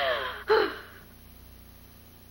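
A woman's distressed breathing: a falling sigh at the start, then a short catching sob or gasp about half a second in.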